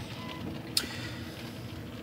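Low, steady hum of a car's cabin with a single faint click just under a second in.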